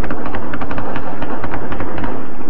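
Gunfire shot into the air: rapid, irregular cracks, several a second, over a steady rumble, the aerial firing that followed the withdrawal of foreign troops.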